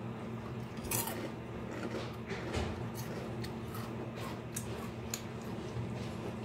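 Someone chewing a crisp Bugles corn snack from freshly baked nuts-and-bolts mix: a run of irregular sharp crunches, the first clear one about a second in.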